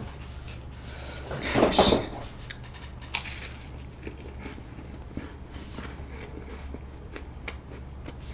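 Crunching bites into two stacked strawberry French Pie puff-pastry biscuits, the loudest crunch about a second and a half in and another near three seconds, then quieter chewing with small crackles.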